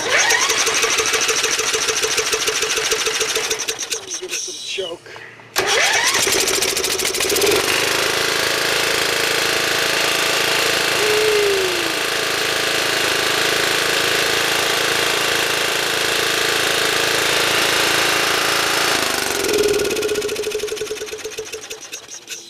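A 13 hp Briggs & Stratton engine on a Craftsman II riding mower is being electric-started. The starter cranks for about four seconds without the engine catching, then cranks again, and the engine catches and runs steadily for about ten seconds before dying away near the end. This is the first start on a freshly rebuilt carburetor with a new needle valve and seat, fitted to cure a fuel leak.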